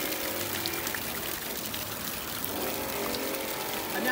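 Water jets of an OASE Quintet fountain spraying and splashing back into its shallow basin in a steady hiss as the jet pattern changes.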